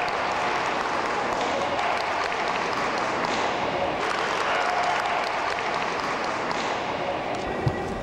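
Spectators applauding a scoring strike in a kendo bout, steady, then dying away near the end.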